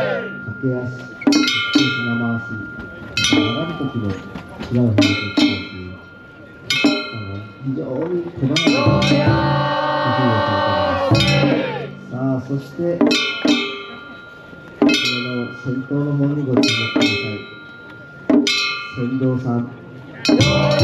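Japanese festival music from a float's ensemble: irregular sharp metallic strikes that ring on, over low drum-like tones, with voices chanting or calling.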